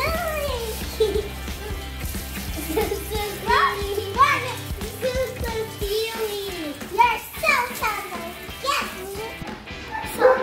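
Children's excited voices, squealing and exclaiming in high, gliding calls, over background music whose low bass line drops out about six seconds in.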